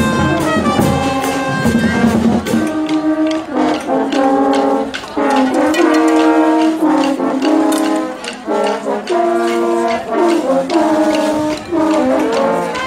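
A school marching band playing brass music: sustained brass chords in a steady rhythm, with sharp percussion strokes throughout. The deep bass drops out about two and a half seconds in, leaving the higher brass chords.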